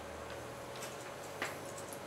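A few scattered light clicks over a steady faint room hum, with one sharper click about one and a half seconds in.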